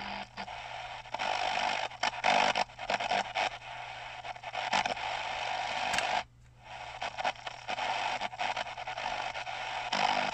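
Shortwave static and hiss from a small XHDATA D-368 portable radio's speaker as its tuning dial is turned across the band, with no clear station coming through. The noise swells and crackles unevenly and drops out briefly a little after six seconds.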